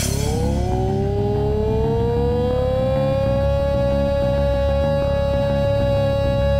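Hardcore/metal band instrumental passage: one long held electric guitar note that slides up in pitch over the first couple of seconds and then holds steady, over a chugging low rhythm of bass and drums.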